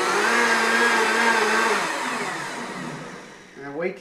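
Countertop blender running, blending hot coffee into a froth, with a steady motor whine. It is switched off a little under two seconds in and spins down, the sound falling away over the next couple of seconds.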